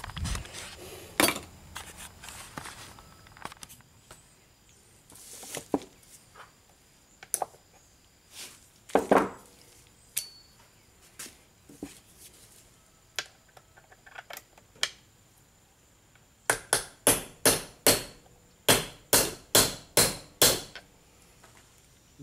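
Hammer rapping on a Roosa Master rotary injection pump held in a vise, to jar loose a stuck internal part: scattered knocks and clinks, then a quick run of about a dozen sharp taps, roughly three a second, near the end.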